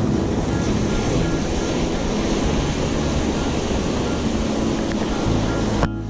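Ocean surf washing over and breaking against jetty rocks, a steady rushing noise mixed with wind buffeting the microphone. The wash cuts off abruptly just before the end.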